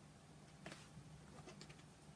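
Near silence: a faint, steady low hum of room tone, with a few faint clicks as a deck of tarot cards is picked up and handled.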